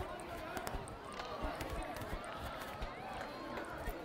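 Faint, distant voices of players and spectators talking and calling, with a few scattered small knocks.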